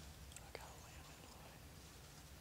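Near silence: a faint steady low hum with a few faint ticks.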